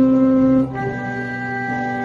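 Music: a wind instrument playing a slow melody in long held notes over a lower accompaniment, the first note loud and the next ones softer after a change about two-thirds of a second in.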